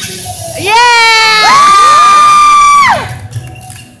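A few voices cheering together in a loud, drawn-out "Yeah!", rising in pitch and holding a high note for about two seconds before breaking off.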